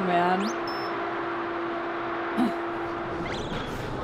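Soundtrack of the behind-the-scenes footage: a short gliding voice-like sound at the start, then one steady held tone lasting about three seconds over a constant background of studio noise.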